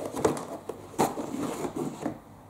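Cardboard product boxes being handled, slid and set down on a wooden tabletop: a string of knocks and scrapes, the sharpest knock about a second in.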